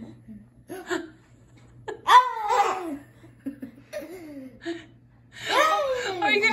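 Bursts of a child's laughter, each falling in pitch, the loudest about two seconds in and another building near the end.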